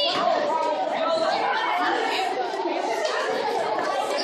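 Chatter of many overlapping young voices in a large hall, with no single speaker clear and no instruments playing.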